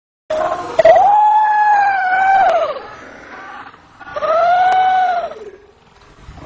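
A person screaming: two long, high-pitched cries. The first starts abruptly and holds for about two and a half seconds; the second, shorter one comes about four seconds in.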